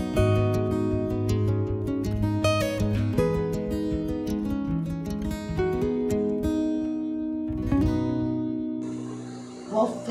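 Background music of a gently strummed and plucked acoustic guitar, fading out near the end and giving way to faint room noise.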